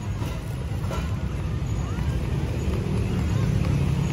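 Outdoor city street ambience: a steady low rumble with faint distant voices.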